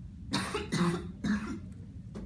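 A person coughing three times in quick succession.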